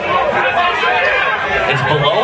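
Crowd chatter in a club: many voices talking and calling out over one another.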